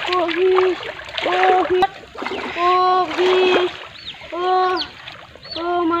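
Water splashing in a shallow flooded pond as a fish is pulled out on a line, under repeated long, drawn-out "oh" exclamations.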